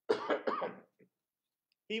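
A man coughs once into his arm: a short, harsh burst under a second long.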